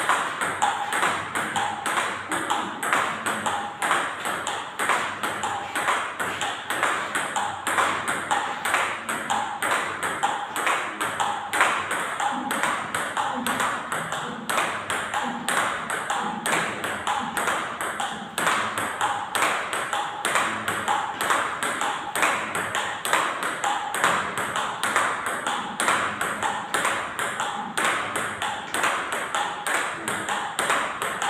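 Table tennis multiball drill: balls clicking off rubber-faced paddles and bouncing on the table in a fast, even rally, several sharp clicks a second, each bounce with a short ping.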